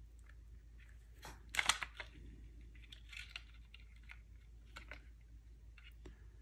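Plastic locomotive body shell clicking and rattling against the chassis as it is pressed down and pried back off. The loudest burst of clicks comes about one and a half seconds in, with fainter taps later. The shell will not seat fully, which the modeller puts down to something inside fouling it.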